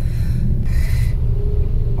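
Steady low rumble inside a car's cabin, with a short hiss a little under a second in.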